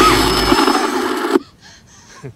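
Loud, dense horror-film soundtrack noise with wavering high pitches running through it, which cuts off suddenly about one and a half seconds in.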